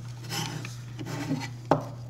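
Rubbing and rustling as a plastic game controller with a metal mounting plate and its cable are handled and adjusted, with one sharp knock near the end, over a steady low hum.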